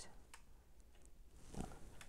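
Very quiet handling sounds: a few faint clicks and a brief rub as fingers press a small chrome engine part onto a die-cast toy car body.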